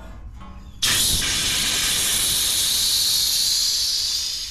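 Pressurized refrigerant gas hissing out of the brass fitting of a red HVAC gauge hose at an air-conditioner condenser's service valve. The hiss starts suddenly about a second in, stays loud and steady, and begins to die away near the end as the hose pressure bleeds off.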